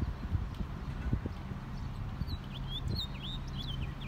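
A small bird chirping in quick, repeated rising-and-falling notes from about halfway through, over a steady low rumble with irregular soft thumps.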